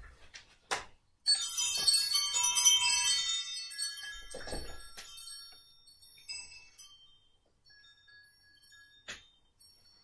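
Chimes rung once: a bright cluster of many high ringing tones that starts suddenly about a second in and dies away over several seconds. A soft knock sounds mid-way and a short click near the end.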